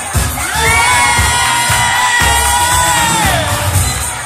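A long, high-pitched shout from someone in the party crowd, sliding up, held for nearly three seconds and falling away near the end, over loud dance music with a thumping bass beat.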